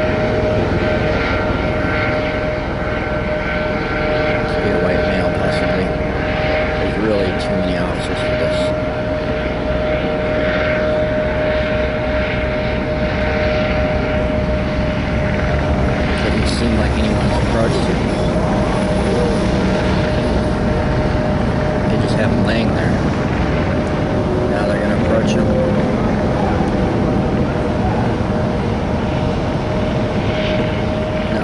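Steady engine drone of a helicopter overhead, with indistinct voices beneath it.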